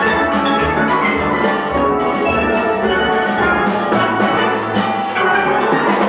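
Full steel band playing live: many steelpans sounding notes together over a drum kit, continuously.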